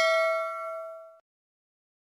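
A bell-like notification ding sound effect rings out with several clear tones and fades away, stopping just over a second in.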